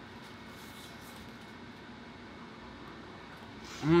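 Quiet room hiss with faint mouth sounds of a man chewing a mouthful of stuffing, then near the end his voiced "mmm" of approval, falling in pitch.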